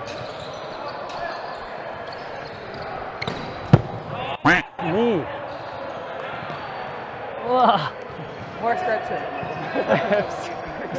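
A volleyball rally: one sharp ball contact about four seconds in, followed by short shouts from players over a steady murmur of voices.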